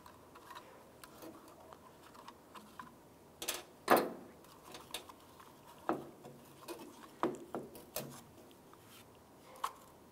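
Irregular light clicks and knocks of plastic and metal parts as a Toyota Tundra tailgate handle and its lock cylinder and spring retainer clip are worked loose by hand, the sharpest knock about four seconds in.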